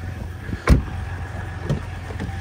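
A pickup truck's crew-cab door shut with one solid thump less than a second in, then a lighter click near the end as the next door's handle is pulled, over a steady low hum.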